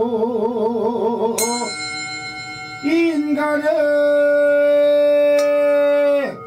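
A male voice singing a Korean folk song, holding a note with wide vibrato, then starting a new phrase and settling on a long steady note. About a second and a half in, a handheld metal bowl is struck with a stick and rings on under the voice. A lighter strike follows near the end.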